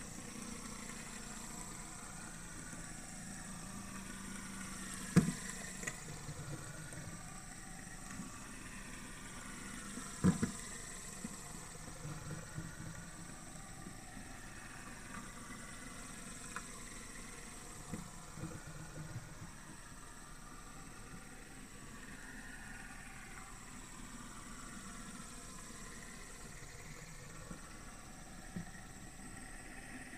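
Metal fidget spinner whirring steadily on its bearing while held by the centre cap. A few sharp clicks break in, the loudest about five and ten seconds in.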